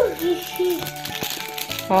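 Background music with brief voice fragments, over a light crinkling rattle of a clear plastic tube being shaken to pour small pom-pom balls out.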